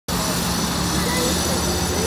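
Busy city street traffic: a steady rumble of engines and passing vehicles, with faint indistinct voices mixed in.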